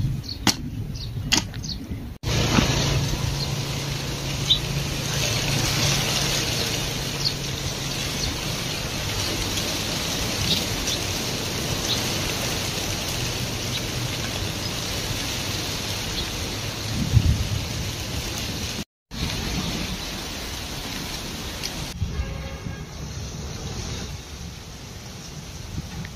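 A hoe chopping into damp soil, several sharp strikes in the first two seconds. Then, after an abrupt change, a steady hiss with a low hum takes over.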